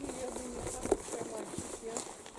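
Faint voices talking in the background, with one short knock just before a second in.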